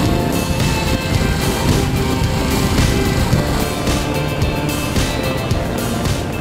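Background music mixed with a motorcycle's engine running under way, from the Aprilia Caponord 1200's 90-degree V-twin.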